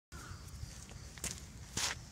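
Footsteps on a sandy dirt path strewn with leaves: a light step about a second in and a louder scuffing step near the end, over a low steady outdoor rumble.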